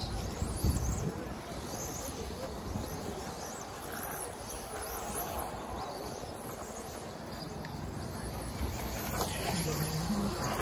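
Outdoor RC track ambience: a steady low rumble on the microphone and distant voices, with faint rising and falling high whines from electric model buggies in the first few seconds.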